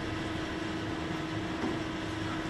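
Steady room tone in a talk hall: an even hiss with a faint steady hum, no speech.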